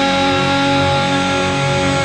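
Electric guitar in drop D tuning, a Schecter Hellraiser C-1FR, played along with a rock band backing track, with notes held and ringing.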